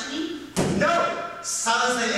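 A single sharp thud on the stage about half a second in, followed by an actor's voice speaking.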